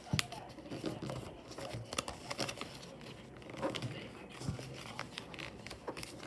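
Sheet of origami paper being folded and creased by hand, crinkling and rustling with scattered crisp crackles.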